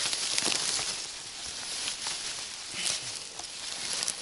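Tall green and dry grass rustling and crackling close to the microphone as it is pushed aside, with scattered small snaps of stems.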